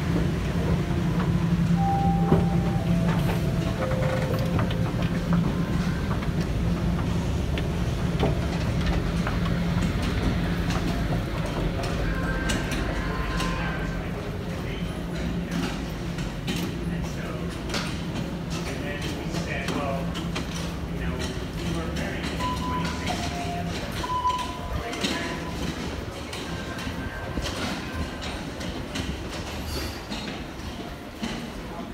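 Toronto subway station sound: a steady low rumble from a train in the station that fades away over the first half, then footsteps, clicks and background voices of passengers moving through the station.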